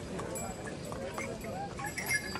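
Hooves of a line of pilgrim ponies and mules clip-clopping on a stone-paved path, amid a crowd's background chatter, with a brief ringing tone near the end.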